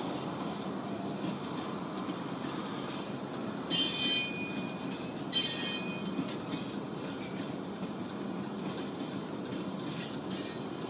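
Freight train's covered hopper cars rolling past with a steady rumble and light regular clicks from the wheels, about one and a half a second. Two brief high-pitched wheel squeals come about four and five and a half seconds in.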